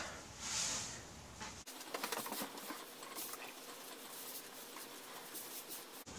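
Hands pressing and rubbing butter into a flour mixture on a wooden board: a faint run of soft pats and rubbing as the butter is worked in.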